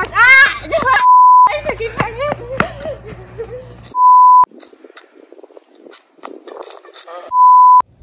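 A steady 1 kHz bleep tone, the kind used with TV colour bars, edited in three times. Each bleep lasts about half a second and they come about three seconds apart. A child's high yell and chatter fill the gaps between them.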